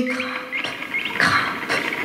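Prepared electric guitar played as noise: a held tone fades out, short rising squeaks follow, and a harsh scraping burst comes a little past one second.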